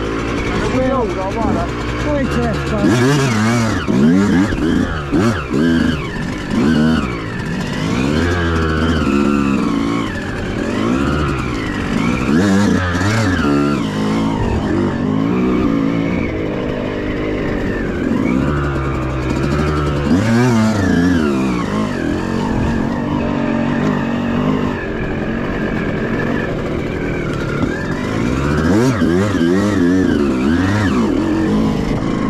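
Two-stroke enduro motorcycle engines (a KTM 150 and a Yamaha YZ125) at low speed on rough ground. The throttle is blipped again and again, so the pitch keeps climbing and dropping back rather than holding a steady note.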